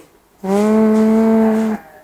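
A single held vocal call of even pitch, like a drawn-out 'mmm' or a moo, starting about half a second in and lasting just over a second.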